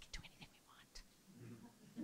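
Near silence: room tone with a few faint, brief whispered voice sounds.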